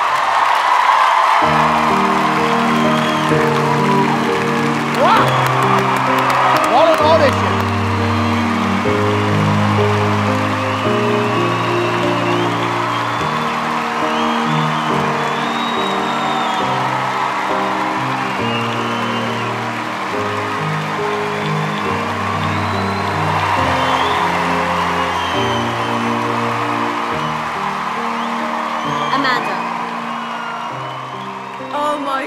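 Large theatre audience cheering and applauding in a standing ovation, with whoops and a few whistles about five to seven seconds in. Underneath, held music chords come in after about a second and a half and run on.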